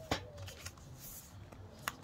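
Cardboard smartwatch packaging handled by hand: a sharp knock just after the start, a brief sliding rustle around the middle, and another sharp click near the end.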